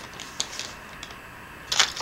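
Packaging being handled: a faint click about half a second in, then a short crisp rustle near the end.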